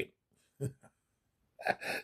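A short pause with a faint click about half a second in. Near the end a man takes a quick, audible intake of breath, a gasp, just before he starts speaking.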